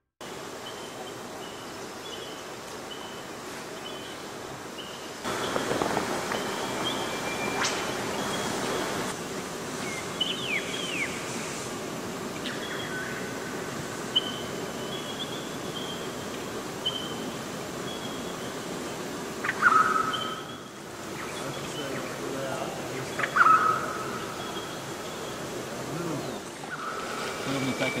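Outdoor bush ambience beside a creek: birds calling, with rows of short high chirps and a few gliding calls. Two louder sharp calls stand out in the second half.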